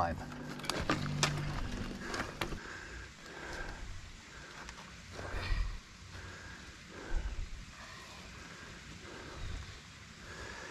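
Quiet outdoor woodland ambience with a few sharp clicks in the first couple of seconds, then low rumbling gusts of wind on the microphone twice.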